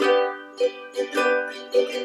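A small ukulele-type acoustic string instrument strummed in a quick, lively rhythm, a chord struck several times a second with the strings ringing between strokes.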